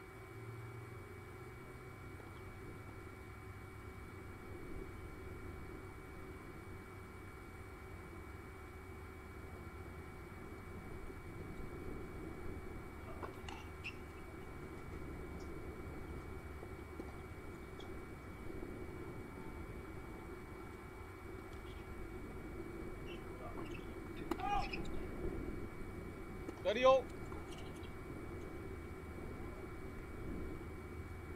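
Low steady background hum with faint, distant voices, and one short voiced call near the end as the loudest sound.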